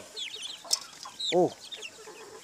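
A flock of young chickens clucking and peeping in many short, high calls as they feed on scattered grain, with one sharp click about two-thirds of a second in.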